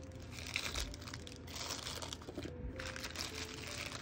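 Clear plastic zip-top bag crinkling as it is handled, in three or four rustling bursts.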